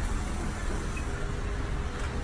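Steady low rumble of background noise with a faint hiss, and no distinct event.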